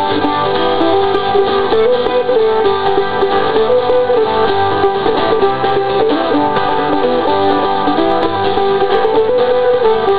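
Acoustic string band playing an instrumental break in a bluegrass-style song: mandolin and acoustic guitars picking and strumming at a steady tempo, with no singing.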